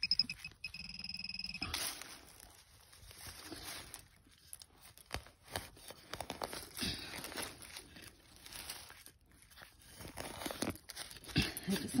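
A metal-detecting pinpointer sounds a fast pulsing beep for about a second near the start, signalling a metal target close by. Then a stainless steel hand trowel scrapes and crunches through damp soil and dry pine needles as the hole is dug.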